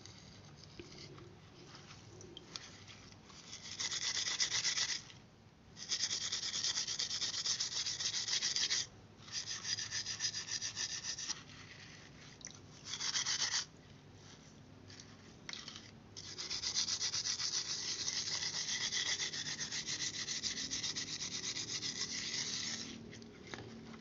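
Steel wool scrubbing a wet etched PCB, scouring the black printed resist off the copper traces. It comes in several bursts of a few seconds each, with the longest run in the second half.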